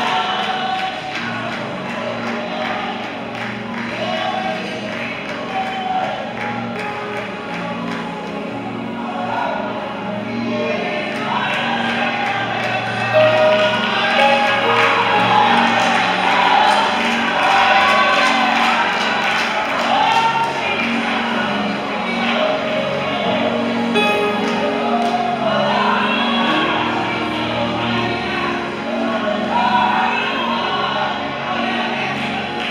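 Gospel worship music: a worship leader sings into a microphone while the congregation sings along over a live band. The singing grows louder and fuller about twelve seconds in.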